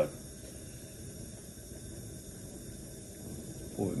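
Steady low hiss of a bottled-gas Bunsen burner flame heating a test tube of boiling water.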